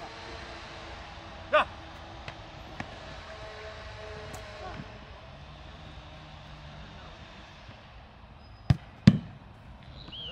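A football shot and a goalkeeper's dive on grass make two sharp thumps, a bit under half a second apart, near the end. The second thump is the heavier one.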